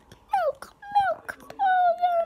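Three short, high-pitched whining calls, each falling in pitch at its end, with small clicks between them.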